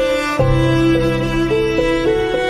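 Instrumental cello cover of a pop song: a bowed melody stepping from note to note over held low notes, with a deep bass note coming in about half a second in.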